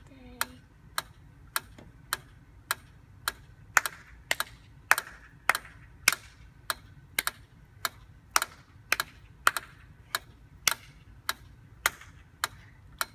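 A metronome ticking steadily at nearly two beats a second, with a child's hand claps landing on some of the beats from about four seconds in, clapping a rhythm of quarter and half notes to the beat.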